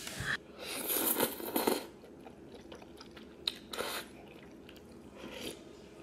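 A person eating noodle soup close to the microphone: a long noisy slurp in the first two seconds, then shorter slurps and chewing with a few small clicks.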